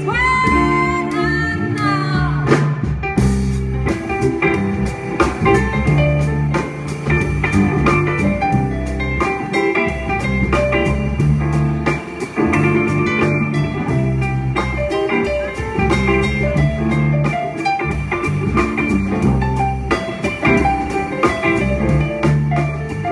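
Live band playing amplified music on drum kit, electric guitar and keyboard, with a steady drum beat.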